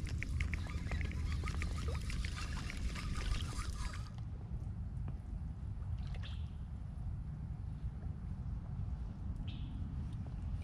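Spinning reel being cranked: a fast run of small clicks over the first four seconds, over a low steady rumble of wind on the microphone.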